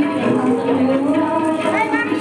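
Group devotional singing, several voices holding long, slowly gliding low notes.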